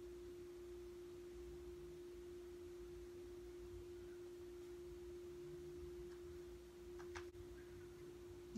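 Faint, steady single-pitched hum in a quiet room, with one faint click near the end.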